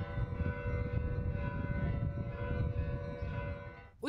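Church bells ringing, their tones sounding together as a steady chord over a low rumble, fading out near the end.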